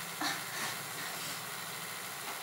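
Room background: a steady hiss with a faint low hum, and one brief soft sound about a quarter of a second in.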